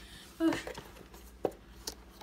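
A few sharp clicks and knocks as a plastic RC truck is picked up and handled. The loudest click comes about one and a half seconds in. There is one brief vocal sound near the start.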